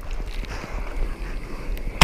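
Steady rush of surf and churning water around a GoPro action camera at the waterline, with a low rumble underneath.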